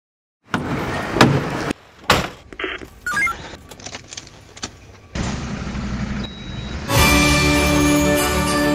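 Fire engine cab sounds: thuds and clatter on the metal step and cab, a few short electronic beeps from the dashboard as it lights up, then a steady low engine rumble from about five seconds in. Music starts near the end.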